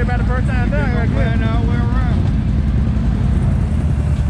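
Close ATV engine running with a steady low rumble. A voice calls out over it during the first two seconds.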